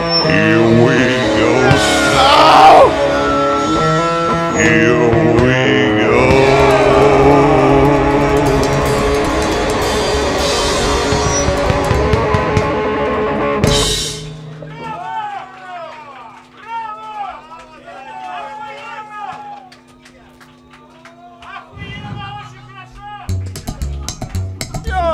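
Live rock band (electric guitar and drum kit) playing loud, stopping abruptly a little over halfway through. After that come quieter overlapping crowd voices over a few steady low held tones.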